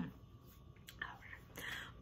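A woman's brief cough at the start, then quiet with soft breath sounds, a breathy inhale just before she speaks again.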